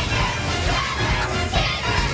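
Upbeat theme music for a cartoon's opening titles, with a group of voices shouting over it.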